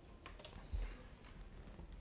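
Faint clicks and light rattling of crocodile-clip leads and resistors being handled on a bench, with a soft thump a little under a second in.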